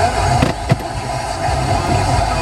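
Car FM radio tuned to 106.5 receiving a weak, long-distance sporadic-E signal buried in static and crackle, with two sharp crackles a little under a second in.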